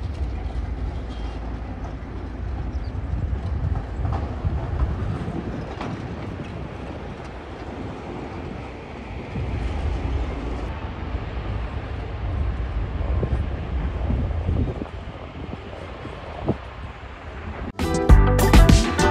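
Stone crusher plant running: a steady, heavy low rumble of crushing machinery with noisy mechanical clatter over it.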